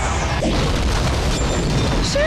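Movie action soundtrack: a loud, continuous din of booming blast effects, with music underneath.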